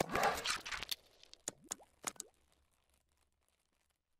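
Logo-animation sound effects: a tap-like pop, then a swish lasting about a second, then a few quick plopping pops between about one and a half and two seconds in, fading away.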